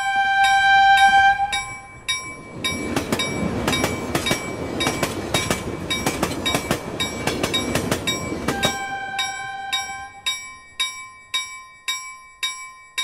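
Steam-train sound effect: a loud whistle blows at the start and again about nine seconds in, with steam chugging in between and a steady clacking about twice a second throughout.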